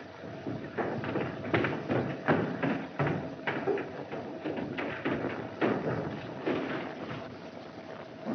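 Footsteps knocking on a wooden floor and stairs, irregular, about one or two a second, over the steady hiss of an old film soundtrack.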